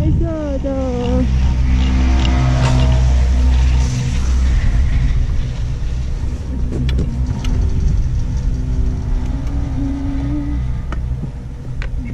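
Low, steady wind rumble on an action camera's microphone during a chairlift ride, with a person's voice humming briefly at the start and again near the end, and a few light clicks.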